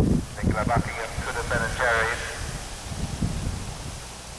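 Hoofbeats of a horse galloping on grass, dull low thuds in a running rhythm. A voice speaks briefly in the background during the first two seconds.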